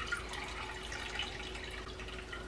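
Ginger juice dripping and trickling faintly from a hand-squeezed cheesecloth bag of ginger pulp into a glass bowl.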